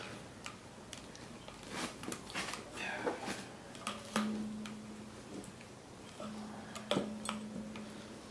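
A metal tabla hammer makes scattered sharp knocks as it drives the wooden tuning pegs in under the straps to tighten a freshly fitted tabla head. From about the middle, the new head rings with a steady low note after a strike, and again near the end.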